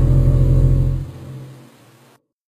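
A loud, low, steady drone that fades out from about a second in.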